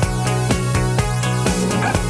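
Electronic dance music from a DJ set: a steady kick drum at about two beats a second over a held bass note.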